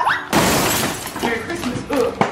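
A sudden loud burst of crackling, crashing noise about a third of a second in, fading away over about a second, with a child's voice under it.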